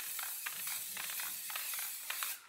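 Aerosol can of clear polyacrylic sealer (Rust-Oleum Painter's Touch) spraying a steady hiss as a light misting coat goes over decoupage paper on wood.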